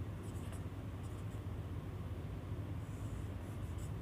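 Marker pen squeaking on a whiteboard in a few short strokes as numbers and a clock hand are drawn, over a steady low hum.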